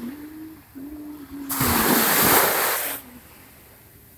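Small sea waves washing up on a sandy beach, with one wave surging in loudly about a second and a half in and fading after about a second and a half. A faint low humming tone sounds under the first half.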